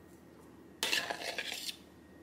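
A metal fork scraping and clinking against a ceramic bowl while scooping out avocado spread, one scrape of a little under a second near the middle.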